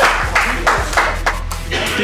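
Background music with a steady low bass, over which comes a quick run of sharp hand slaps and claps from players high-fiving, about five in the first second and a half.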